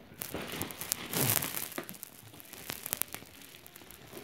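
Plastic bubble wrap crinkling and crackling as it is handled and pulled from a cardboard box, in irregular bursts of small clicks, loudest about a second in.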